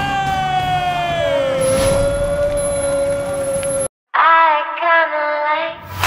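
A ring announcer's long drawn-out call of the winner, over background music, its pitch sliding slowly downward. It cuts off abruptly about four seconds in, and a short burst of a musical jingle follows.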